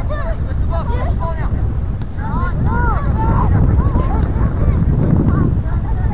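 Wind buffeting the microphone in a steady low rumble. Over it come many short distant calls, each rising and then falling in pitch.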